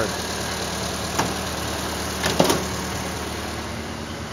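1929 Ford Model A's four-cylinder flathead engine idling steadily, with two sharp clicks about a second and about two and a half seconds in.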